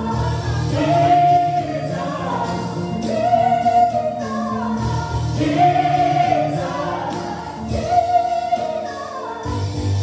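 Live gospel praise singing: a woman leads on a microphone with two backing singers over a backing track, repeating a short phrase about every two and a half seconds, each ending on a held note.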